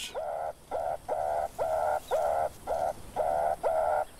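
Meerkats giving alarm calls at a ground predator closing in: a fast, regular run of short calls, about two to three a second, each sweeping up in pitch at the start and then holding steady.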